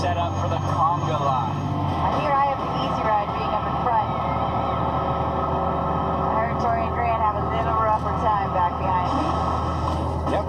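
Indistinct talking over a steady low engine drone; the drone changes about two seconds in.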